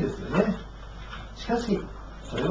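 A man's voice speaking two short phrases, one just after the start and one past the middle, with pauses between them.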